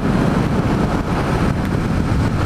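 Steady wind rush on the microphone over the low running of a Yamaha MT-07 motorcycle ridden at an even speed.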